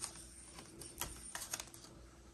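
A few faint clicks and taps of fingers handling a plastic sling psychrometer as it is turned around, the sharpest about halfway through.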